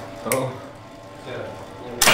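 A sharp click from the old elevator relay controller about a third of a second in, over a faint steady machine hum. A louder clack comes right at the end.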